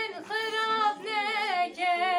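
A woman singing a Kurdish song unaccompanied: long held notes with wavering ornaments, broken by brief pauses for breath about halfway and near the end.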